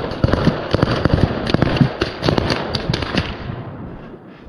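Rapid, irregular small-arms gunfire, many sharp shots close together, thinning out and getting quieter toward the end.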